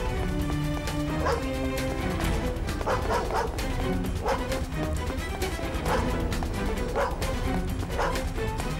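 A dog barking repeatedly, a bark every second or so, over background music with long held notes.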